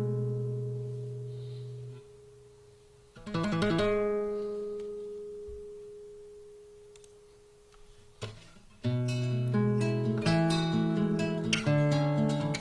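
Solo acoustic guitar played fingerstyle: a chord rings and fades, a second chord about three seconds in is left to ring out slowly, then from about nine seconds in a steady run of picked notes begins.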